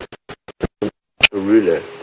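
Audio feed cutting in and out: rapid short fragments of sound with dead silence between them, a stuttering dropout of the transmitted sound. A sharp click comes about a second and a quarter in, then a voice speaking continuously.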